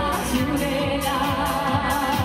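A woman singing a Korça serenade, an Albanian urban folk song, live into a microphone, her melody wavering and ornamented, accompanied by keyboard and electric guitar over a steady beat.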